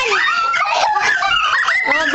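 Children squealing and shrieking in high, wavering voices while they play-wrestle.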